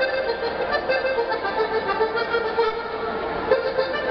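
Accordion playing a lively Sardinian folk tune in quick successive notes, over a haze of outdoor crowd noise.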